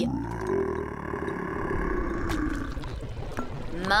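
A cartoon frog burp: one long, deep belch let out of a jar, tailing off near the end.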